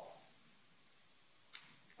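Near silence, with one short, faint sound about one and a half seconds in.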